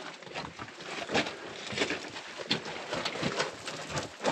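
Footsteps crunching and scuffing on a loose rock floor: irregular short crunches, a few a second.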